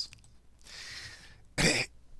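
A man coughs once, a single short cough about one and a half seconds in, just after a faint breath.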